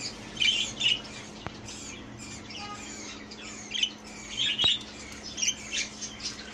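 Young budgerigar chick squawking: repeated short, harsh calls in small bunches, a sign of its protest at being held in the hand.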